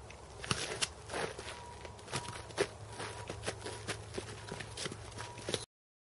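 Practice swords knocking together and feet scuffing and stamping on a dirt track during sword sparring: irregular sharp knocks and scrapes, several a second, starting about half a second in. The sound cuts off suddenly near the end.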